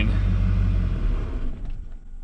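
A 6.6 L LB7 Duramax V8 turbodiesel idling after a cold start, then dying away about a second in as it stalls. The stall is the sign of air reaching the injection pump behind a small slug of fuel: the fuel system is losing prime and air-logging.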